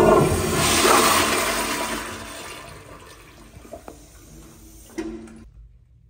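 Public-restroom toilet flushing: a sudden loud rush of water that fades away over about three seconds, with a sharp click about five seconds in.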